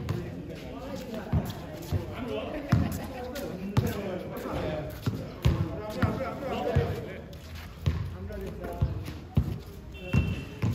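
A basketball bouncing on an outdoor concrete court: irregular dribbles, roughly one or two sharp thuds a second. Players' voices call out underneath.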